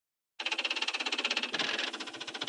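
Typing sound effect played as on-screen text prints character by character: a fast, even run of clicks starting about half a second in.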